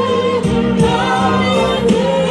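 Gospel singing: a woman's lead voice through a microphone, with backing voices and a few beats behind it.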